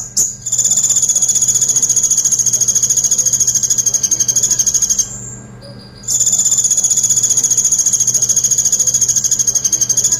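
A caged male kolibri ninja sunbird singing two long, fast, even, high-pitched trills of about four to five seconds each, with a pause of about a second between them. These are the rapid 'tembakan pelatuk' bursts that songbird hobbyists prize.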